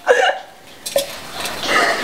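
Women laughing: a sudden voiced burst of laughter, a short lull, then breathy laughter building near the end.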